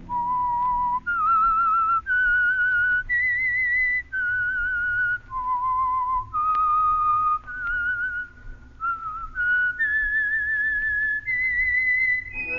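A person whistling a slow melody of about a dozen held notes, each roughly a second long with vibrato, climbing and falling, over faint low musical backing. It is the radio drama's signature whistled theme, sounding as the program's closing signal.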